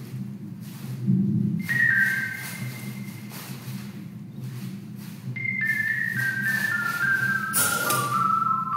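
Whistle-like tones stepping down in pitch over a low steady drone: a short falling phrase about two seconds in, then a longer run of notes descending step by step from about five seconds in. A brief noisy burst sounds near the end.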